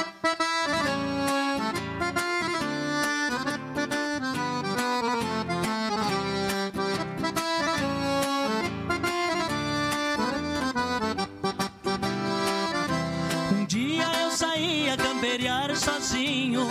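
Gaúcho music: an accordion-led instrumental introduction over a steady, pulsing bass rhythm, opening the next song.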